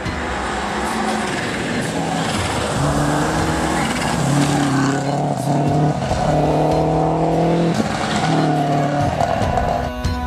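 Subaru Impreza rally car's flat-four engine running hard past the camera on a gravel stage. The engine note holds high and steps in pitch several times with gear changes, over the noise of tyres on loose gravel.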